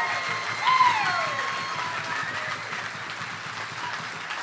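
Audience applauding and cheering, with a single voiced whoop falling in pitch about a second in; the applause gradually dies away.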